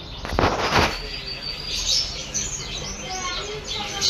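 Small cage birds chirping over and over in short, high calls, with a brief loud rustle about half a second in.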